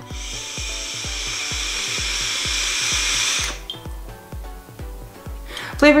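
A long draw on a Fumytech EZipe pod vape: a steady hiss of air and coil sizzle lasting about three and a half seconds, then stopping. Background music with a steady beat plays throughout.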